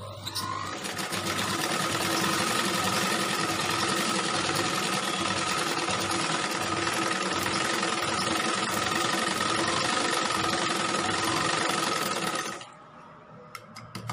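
Domestic sewing machine running steadily as it stitches fabric. It comes up to speed over the first couple of seconds and stops shortly before the end.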